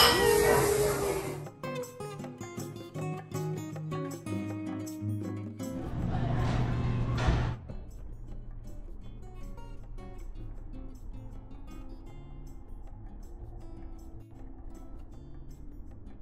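Background music: an upbeat samba track with short plucked notes, after a brief burst of voices in the first second or so. A short rush of noise sits under the music about six seconds in.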